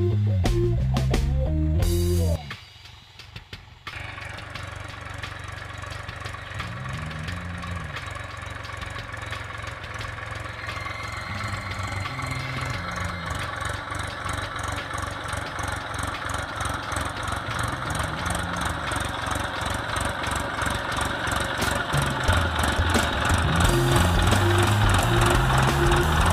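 Music for about two seconds, then from about four seconds in a Massey Ferguson 241 DI tractor's three-cylinder diesel engine running steadily with a rapid even beat while pulling a cultivator through the field. It grows louder as the tractor comes closer, and music comes back near the end.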